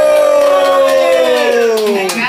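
A long, drawn-out howl: one held note sliding slowly down in pitch, following a shorter falling howl just before it.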